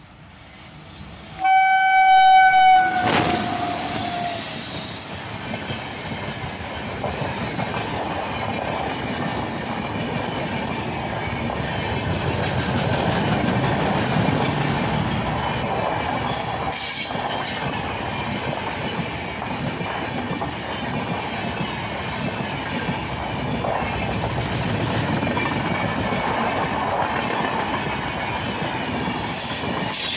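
An Indian Railways WAP-7 electric locomotive sounds its horn about two seconds in, one long note that drops in pitch as the engine passes at high speed. The express's passenger coaches then rush by, their wheels rumbling and clattering on the track.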